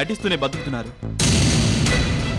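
A man's raised voice, then a sudden loud dramatic sound-effect hit a little over a second in: a burst of noise lasting about half a second, the kind of sting a TV serial lays over a reaction shot. Music runs underneath.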